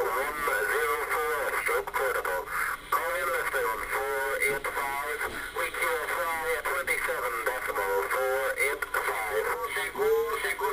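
A voice received over single-sideband on an HR 2510 radio tuned to 27.555 upper sideband, sounding thin and squeezed into a narrow band, with occasional crackles of static.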